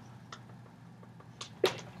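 Dry-erase marker writing on a whiteboard: a few faint, brief strokes and taps, with one short, sharper sound near the end.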